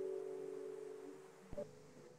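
Closing chord of a classical guitar ringing out and slowly dying away, with a faint knock about one and a half seconds in.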